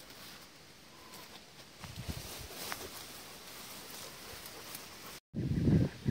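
Faint rustling of leaves and brush with a few light snaps, from someone moving through dense, head-high hardwood regrowth. It grows a little louder about two seconds in, and the sound cuts out completely for a moment just after five seconds.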